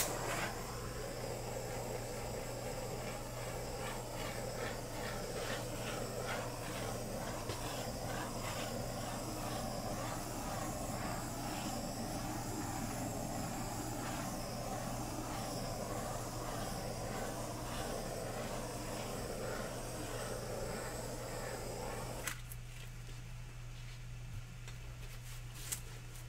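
Handheld butane torch flame hissing steadily as it is played over wet poured acrylic paint, opening with a sharp click and cutting off suddenly about 22 seconds in.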